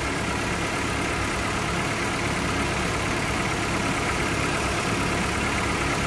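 A car engine idling steadily at the battery while its charging system is being tested.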